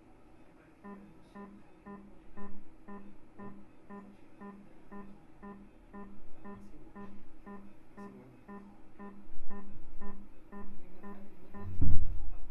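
Music with a plucked, guitar-like tone, built on one pitched note pulsing evenly about twice a second.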